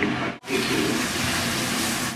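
Steady rush of running water that starts about half a second in and cuts off abruptly just before the end.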